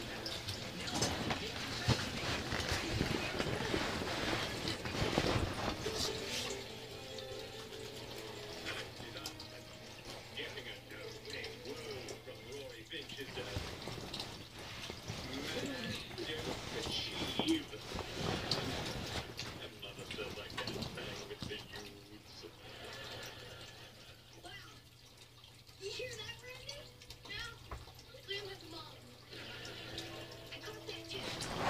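Bedding rustling as a person shifts under a blanket on an air mattress, loudest in the first several seconds. After that it goes quieter, with faint speech in the background over a steady low hum.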